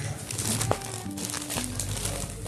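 Plastic diaper pack crinkling as it is handled and turned over in the hands, over soft background music.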